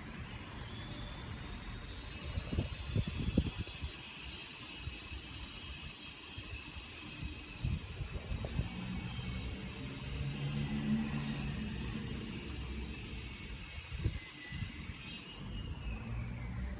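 Outdoor background noise: a low rumble with gusty bumps and a few knocks, typical of wind on the microphone and distant traffic. A faint high steady tone rises in at the start and slides down near the end.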